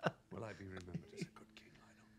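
A brief hushed voice or chuckle in the first second, fading to a faint, steady low hum.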